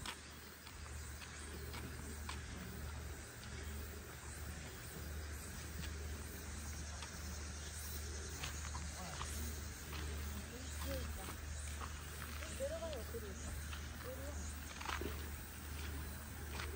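Faint campground ambience: distant voices of people calling and talking, a few short clicks and crunches of steps on gravel, over a steady low rumble.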